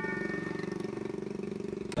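A small engine idling steadily with a fast, even pulse, and a single sharp click near the end.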